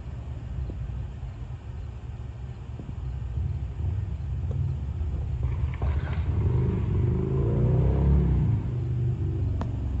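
Low vehicle engine rumble that swells, its engine note climbing and then falling away, loudest about eight seconds in before easing off.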